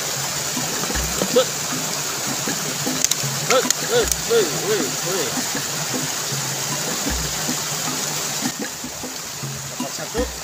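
A small waterfall running, a steady rush of water.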